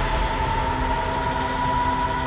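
A steady droning tone with a low rumble beneath it, held without a break.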